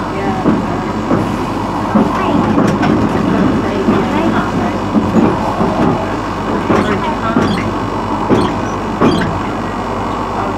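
Blackpool tram running along its track, heard from inside the car: a steady rumble with a few sharp clicks from the wheels on the rails.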